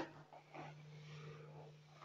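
Near silence: room tone with a faint steady low hum and a few faint soft noises.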